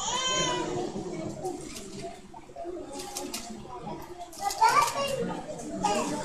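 A young child's high-pitched voice calling out and falling in pitch at the start, then quiet voices in the background with a few brief clicks.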